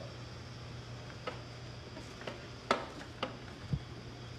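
Scattered light clicks and knocks from the hinged rear entry hatch of an Orlan spacesuit as it is swung open by hand, the loudest a little under three seconds in, over a steady low hum.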